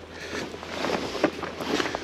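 Footsteps through soft, spongy boggy ground and wet tussock grass: irregular steps with grass rustling.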